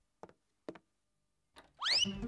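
Mostly quiet, with two faint short knocks in the first second. Near the end comes a cartoon sound effect: a single whistle-like tone that glides quickly upward.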